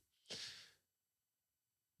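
Near silence, with one faint, brief breath drawn at the microphone in the first half-second.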